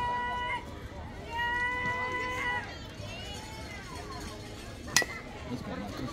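A bat hitting a pitched ball: one sharp crack about five seconds in, the loudest sound, followed by scattered voices. Before it, two long, high calls are held at a steady pitch.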